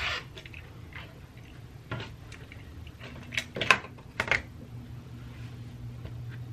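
Cotton fabric and an acrylic quilting ruler being handled on a cutting mat. A brief swish at the start is followed by a few sharp clicks and knocks around the middle, several close together.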